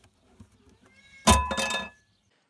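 Plastic trickle vent cover being slid or pulled off the vent slot: faint rubbing, then a loud scrape with a squeak about a second and a quarter in, lasting about half a second.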